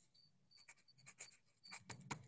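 Near silence on an open microphone: faint clicks and scratching, with short high chirps every half second or so and the loudest click near the end.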